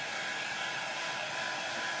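A handheld craft heat tool blowing hot air over a chalkboard sign: a steady, even rushing hiss with no change in pitch.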